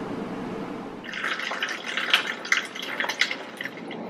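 Lemon juice poured from a plastic bottle into a glass measuring cup: a steady stream that turns uneven about a second in.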